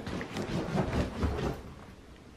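Footsteps on a hard floor: a run of soft, low thumps about two a second, fading out near the end.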